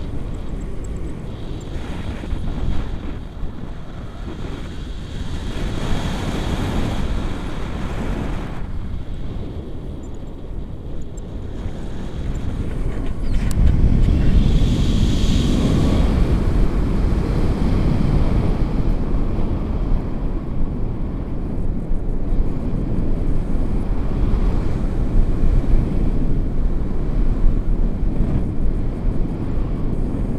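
Airflow buffeting a handheld camera's microphone during a tandem paragliding flight: a steady low rush of wind noise that gets louder about halfway through.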